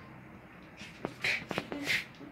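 Quiet shuffling and rustling of a person moving into place in front of a whiteboard, with two sharp clicks and a few breathy hisses.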